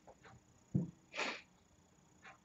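A person's short, soft breath: a brief airy puff about a second in, just after a faint low murmur.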